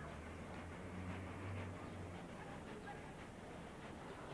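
Faint outdoor background noise: a low hum that fades about two seconds in, under a steady hiss.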